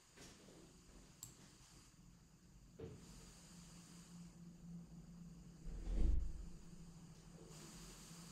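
Faint background noise of a room recording with no voice in it: a steady low hiss with a low hum, and a single low thump about six seconds in.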